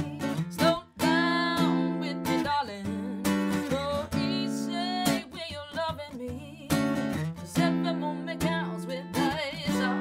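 A woman singing a song live, accompanying herself on a strummed acoustic guitar, with sung notes held and wavering over the ringing chords.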